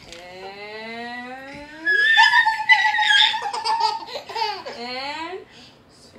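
A woman's slow, drawn-out voice rising in pitch, then high-pitched child's laughter about two seconds in, followed by sing-song falling voice glides.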